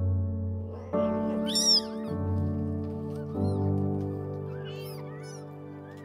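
Newborn kittens mewing: a few thin, high-pitched cries that rise and fall, the loudest about one and a half seconds in and a few fainter ones around five seconds, over background music.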